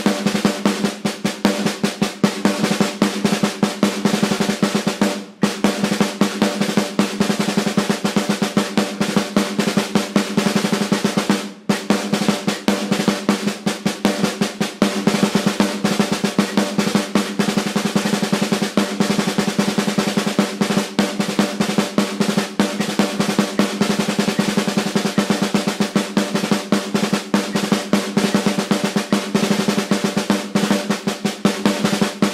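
Rudimental snare drum solo played with sticks at a slow practice tempo (quarter note = 76): a dense, continuous run of strokes and rolls with the snare's ring, broken by two brief pauses about five and eleven seconds in.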